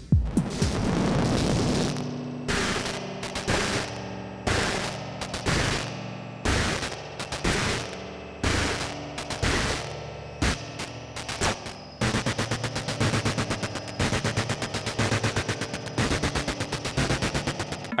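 Drum-machine hits from a Teenage Engineering TX-6 played through a Screwed Circuitz Tower Spring Reverb, each hit trailed by a ringing, pitched reverb tail. In the last third the hits come in a quick roll of about five a second.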